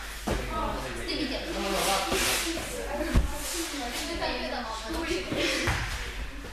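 Indistinct talking of several children in a gym hall, with a few dull thuds, the sharpest about three seconds in.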